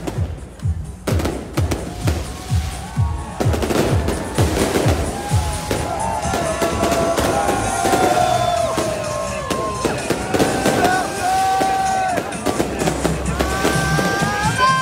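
Fireworks bursting overhead in a rapid run of bangs and crackles, over music with a steady thumping beat that fades out about halfway through. Crowd voices rise and whoop above the bursts.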